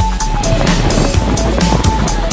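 Background music with a steady beat, about four beats a second, and a simple melody of short held notes.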